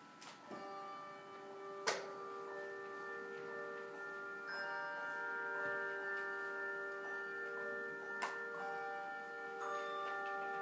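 Handbell choir ringing a slow piece: chords of handbells struck and left to ring on into one another, the first chord about half a second in and new bells joining every few seconds. A sharp click about two seconds in.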